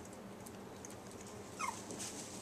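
A young border collie puppy giving one brief, high-pitched whimper, a short falling squeak, about one and a half seconds in.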